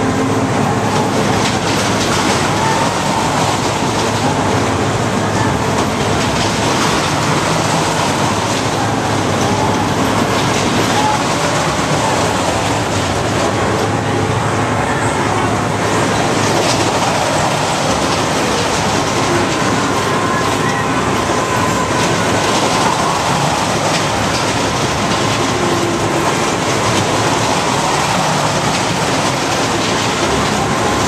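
A looping ring ride's train of cars running round and round the inside of its vertical ring track: a loud, steady rolling noise that never lets up.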